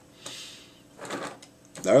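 Plastic toy vehicles being slid across a tabletop: two short scraping sounds, the first about a quarter of a second in, the second about a second in.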